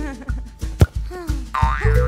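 Cartoon sound effects for a child tripping and falling: a sharp knock about a second in, then a short tone that swoops up and down near the end, over light background music.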